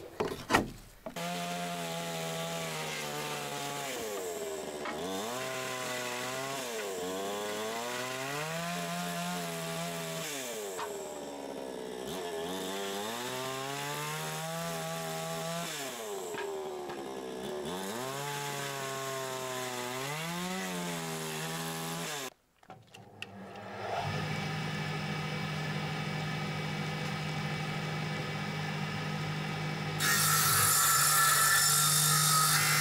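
A power saw cutting wood, its motor pitch sagging under load and recovering every few seconds. It stops briefly near the two-thirds mark, then a steadier motor hum runs on.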